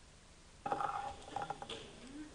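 A short run of knocks, clicks and rustling from someone getting up from a desk beside its gooseneck microphone, starting about halfway in, with a brief squeak among the knocks.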